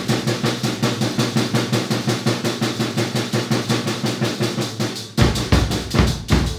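Acoustic drum kit played with sticks: a fast, even roll of strokes around the drums, then about five seconds in the bass drum comes in with heavier beats.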